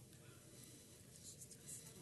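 Near silence: room tone with a faint low hum and a few faint rustles in the second half.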